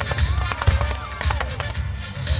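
Fireworks going off in a rapid series of sharp pops and crackles, over a low booming rumble, with music playing at the same time.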